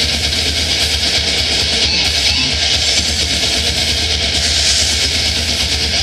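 Death metal band playing live, loud and dense: distorted guitars, electric bass and fast drumming with rapid kick-drum pulses, without a break.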